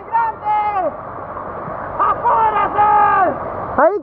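Steady rushing noise of heavy rain and a flooding river, with voices calling out over it twice. The noise cuts off abruptly near the end.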